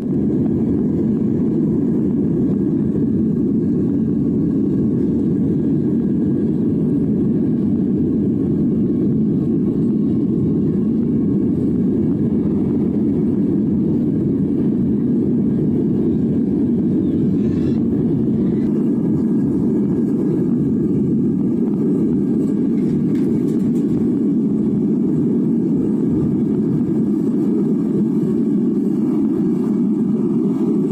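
Metal-melting furnace burner running, a steady low roar of flame and air that holds level throughout, while metal melts in the crucible.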